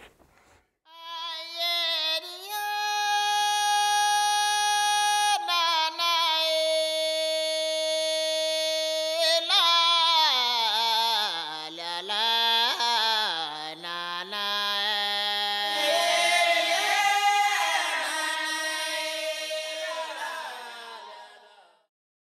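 Wordless female singing in music: long held notes that step up and down in pitch, then ornamented gliding phrases, with more parts layered in during the second half. It fades out near the end.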